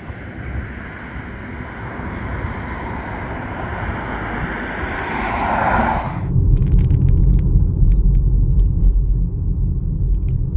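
Street traffic noise: the hiss of passing cars' tyres and engines, swelling as a vehicle goes by about five seconds in. About six seconds in the sound changes abruptly to the low rumble of a car being driven, heard from inside.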